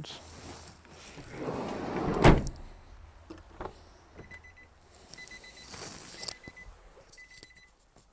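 Nissan NV200 cargo van door swung and slammed shut about two seconds in, with a rush just before the hard slam. From about four seconds the van's warning chime beeps in short quick runs at a steady high pitch.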